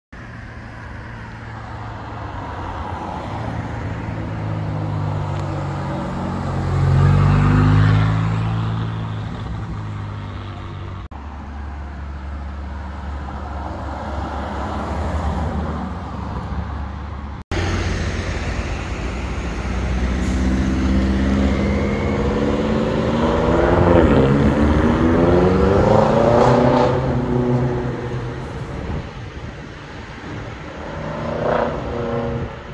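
Supercar engines on a city street, in three spliced clips. First a car passes with its engine note rising, loudest about seven seconds in. Then a Lamborghini Urus's twin-turbo V8 rumbles low and steady. After a cut, an engine revs up through several rising sweeps as it accelerates hard, loudest a few seconds before the end.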